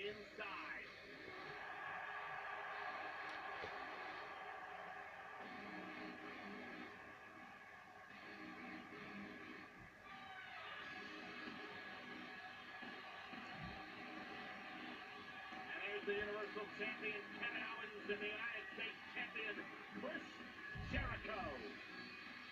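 Faint audio of a televised wrestling broadcast playing in the room: music, with commentators' voices coming in over the last several seconds.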